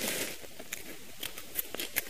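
Small multitool scissors cutting into a dry, papery moth cocoon: a brief soft rustle at the start, then a few faint, scattered clicks and crackles as the blades snip the casing.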